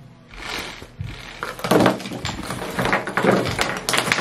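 The contents of a handbag clattering out onto a tabletop as the purse is tipped upside down and shaken. From about a second and a half in there is a dense run of clicks and knocks as keys, lipstick tubes, small bottles and other loose items tumble out and hit the table.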